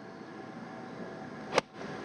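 A golf iron striking the ball: one sharp, crisp click about one and a half seconds in, over a low steady outdoor background. The shot came out of the rough as a flyer and carried well over the green.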